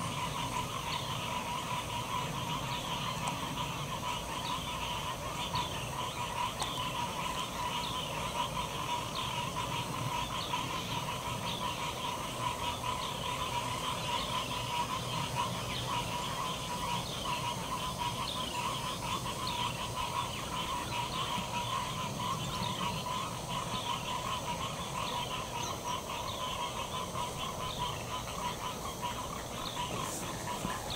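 Steady outdoor chorus of calling animals: a continuous drone with quick high chirps repeating about twice a second over it.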